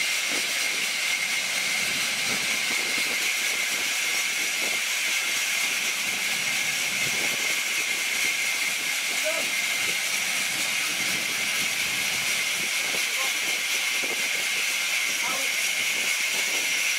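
Large sawmill band saw running through a log as it is fed along the table: a steady high-pitched hiss with a constant whine.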